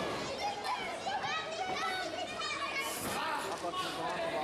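Children in the audience shouting and chattering in high voices, many at once, with a single short impact about three seconds in.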